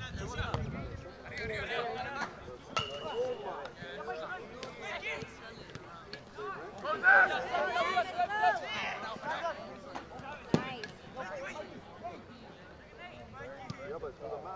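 Shouting voices of players and coaches across an outdoor soccer field, loudest in the middle of the stretch, with a few sharp knocks of the ball being kicked, the clearest about ten seconds in.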